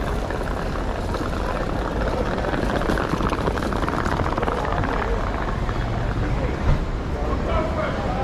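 Busy city street ambience: passers-by talking over a steady low rumble of traffic.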